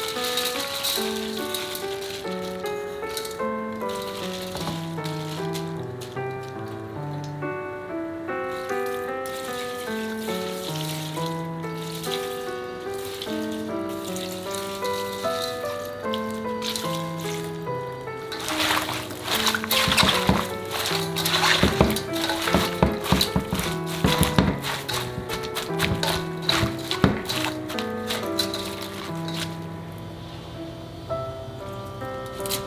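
Light background music with a plucked melody. From a little past the middle, water poured from a jug splashes and patters over salted napa cabbage leaves in a stainless steel bowl for about ten seconds, louder than the music.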